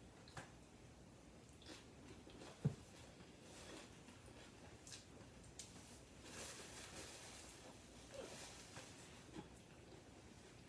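Quiet close-up chewing of a mouthful of sauced nacho chips, with small wet clicks and crackles, and one sharp soft thump about a quarter of the way in. A paper napkin rustles a little past the middle as the mouth is wiped.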